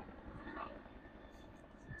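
A helicopter flying by overhead, heard as a faint, steady low rumble.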